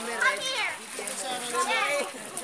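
Several children's voices calling and chattering over one another, the high voices of children at play.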